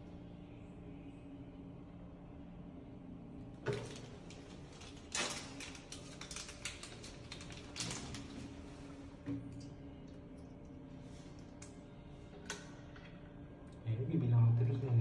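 Scattered light clicks and rustles of small objects being handled, busiest for a few seconds in the middle, over a steady low hum.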